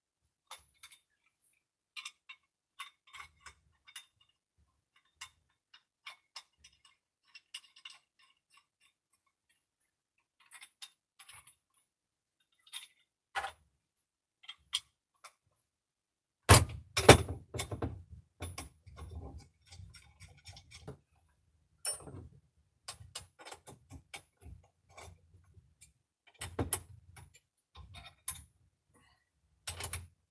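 Metal bolts and parts of a desk-mount monitor stand clicking and clinking as they are handled on a table, with sparse faint clicks at first, then busier, louder knocks and handling noise from about halfway through.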